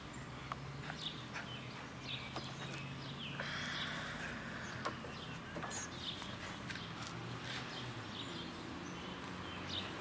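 A dead branch rustling and knocking as an Airedale terrier leaps and tugs at it with her teeth, with a louder burst of rustling about three and a half seconds in. Faint bird chirps and a low steady hum lie underneath.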